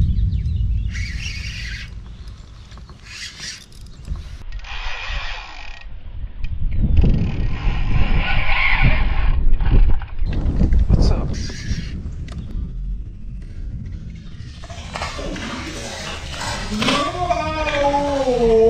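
A steady low rumble with several short bursts of hiss, then near the end a man's drawn-out, wavering exclamation while a hooked fish is being fought.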